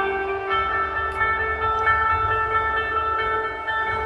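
Koto played through electronic processing: layered, long-held tones that form a drone over a low rumble, with new notes entering about half a second and two seconds in.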